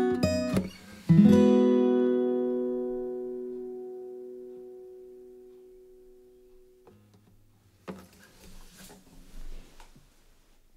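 Fingerpicked steel-string acoustic guitar with a capo, playing its last few notes, then a final chord struck about a second in that rings and slowly fades away over several seconds. Faint scattered noise near the end.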